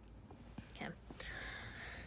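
Faint handling noise of a phone being turned round: a few light clicks, then a soft breathy hiss in the second half.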